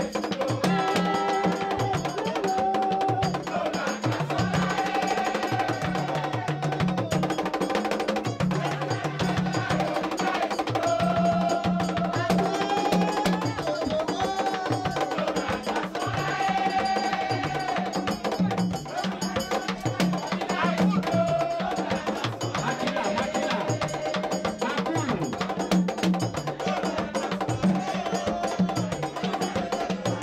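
Group singing of a Haitian Vodou ceremonial song, many voices together over a steady, driving rhythm of drums and a sharp struck percussion beat.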